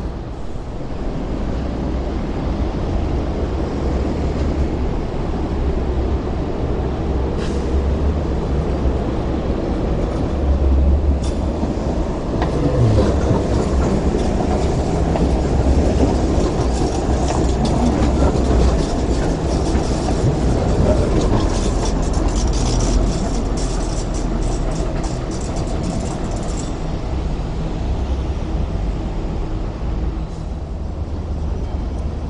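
MTR Light Rail train passing close by on its track, the running noise swelling through the middle over a steady low rumble. A quick run of clicking and rattling from the wheels comes in the later part.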